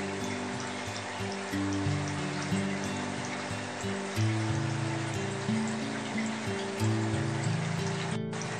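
Background music of slow, held low notes that change step by step, over a steady trickle of water.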